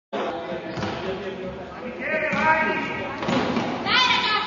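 Players' voices calling out in a reverberant sports hall, with thuds of a futsal ball being kicked and bouncing on the hard court.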